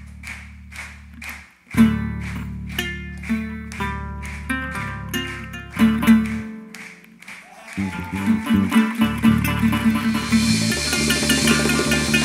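Live percussion-band music: a stripped-down break in which a plucked string line over a held bass runs with steady, evenly spaced hand claps. About eight seconds in, the djembe drums and cymbals come back in and build into a dense full-band groove.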